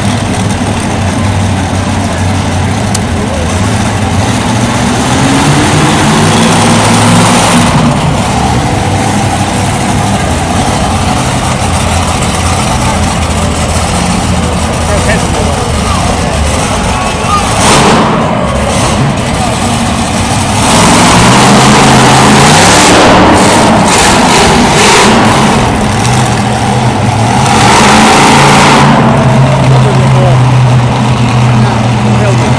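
Monster truck supercharged V8 engines revving and idling, loud, the pitch climbing and dropping again and again. The revving is loudest over the last third.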